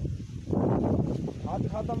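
Indistinct men's voices talking, mostly too muffled to make out, with a short exclamation near the end.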